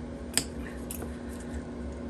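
Utility knife blade prying at the metal retaining points of a picture frame's backing. There is one sharp click about a third of a second in, then a few faint ticks, over a steady low hum. The point is stubborn and does not come free.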